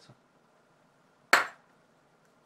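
A single sharp metallic click about a second and a half in, with a brief ring, as the metal handle scales of a disassembled folding knife knock together while being handled.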